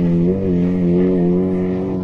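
Car engine held at high revs at a steady pitch, easing off slightly near the end.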